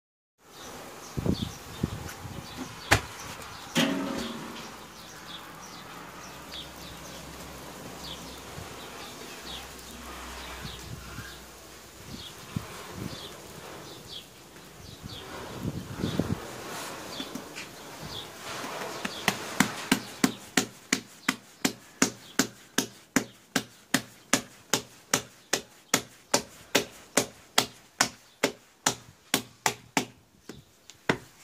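Bread dough being slapped by hand as it is stretched into a thin round, a sharp slap a little over twice a second through the last ten seconds. Before that, handling rustle and a few knocks, with faint high chirps in the background.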